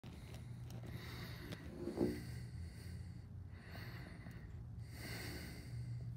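A person breathing close to the microphone, with one short voiced grunt about two seconds in, over a low steady hum.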